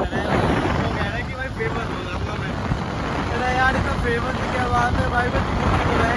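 Wind buffeting the phone microphone of a rider on a moving motorcycle, a steady rushing rumble mixed with road noise, with a voice heard faintly through it.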